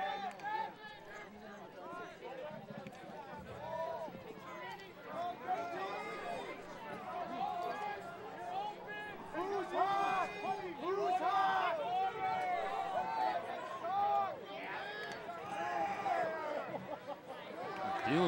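Many overlapping voices on and beside a lacrosse field: players and the bench calling out and shouting during play, with crowd chatter behind.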